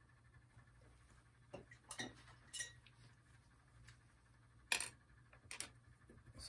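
About five light, irregular taps and clicks of a paintbrush against painting gear at the easel, the loudest a little before the end, over a faint steady room hum.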